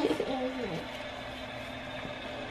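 A young child's brief soft coo, rising and falling in pitch, in the first second.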